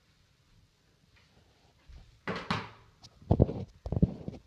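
A short rushing noise, then a plastic water bottle thunks a few times as it lands on the wooden ledge above a door, coming to rest standing upright: a successful bottle-flip trick shot.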